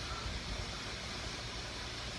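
Steady low rumble and hiss of workshop background noise, with no distinct events.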